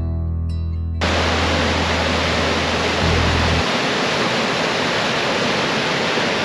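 Guitar music cuts off about a second in, giving way to the steady, even rush of river water tumbling over a rocky cascade.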